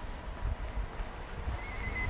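Outdoor street ambience with irregular low thumps and rumble, and a brief faint high tone near the end.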